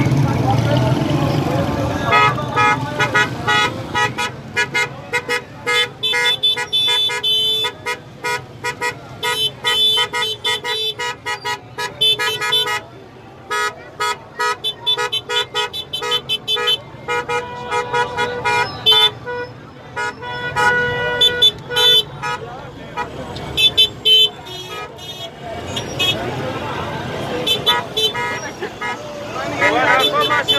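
Car horns honking in long runs of short, rapid beeps, several at once, over street traffic and voices. Near the end the honking thins out and crowd voices take over.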